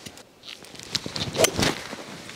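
Hybrid golf club striking a teed golf ball: a sharp crack about one and a half seconds in, with a second knock a quarter of a second after it.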